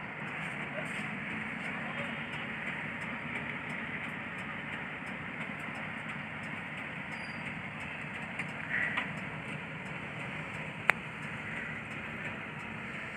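Steady running noise inside a bus cabin, with one sharp click near the end.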